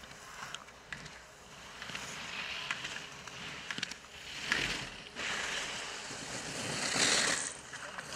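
Alpine ski edges carving turns on hard-packed snow: a hissing scrape that swells with each turn, about a second apart, loudest near the end.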